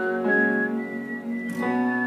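Acoustic guitar chords ringing with a whistled melody above them, held notes stepping up and down in pitch. A new chord is strummed about a second and a half in.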